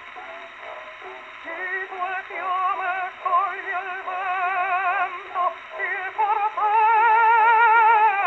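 Mezzo-soprano singing on a 1910 acoustic 78 rpm Columbia record played through a horn gramophone, with a thin, hissy sound. After a quieter start she sings short phrases with a wide vibrato, then near the end holds one long, loud note.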